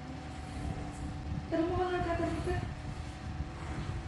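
Steady low hum of the room with a faint steady tone above it. A woman's voice sounds for about a second, starting about a second and a half in, too brief or unclear to make out words.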